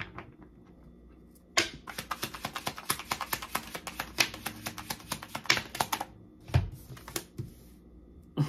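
A deck of tarot cards being shuffled by hand: a quick run of small card clicks lasting about four seconds, starting a little under two seconds in. A soft thump follows near the end.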